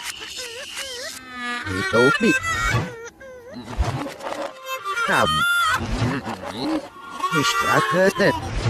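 Cartoon soundtrack of wordless character vocalizations (cries, grunts, gibberish) mixed with music and comic sound effects, with a warbling, buzzing tone in the first second.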